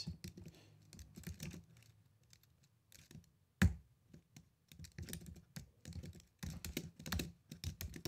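Typing on a computer keyboard in irregular runs of key clicks, pausing briefly before one louder knock about three and a half seconds in, then picking up again.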